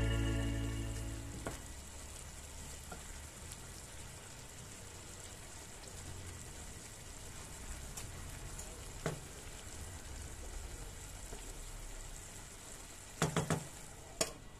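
Chicken sausage and spinach sizzling quietly in a nonstick frying pan while being stirred with a wooden spoon, with an occasional knock of the spoon on the pan. Near the end comes a short run of clatters as a glass lid is set on the pan.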